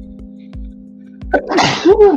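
A person sneezing once, loudly, near the end, over background music with a steady beat.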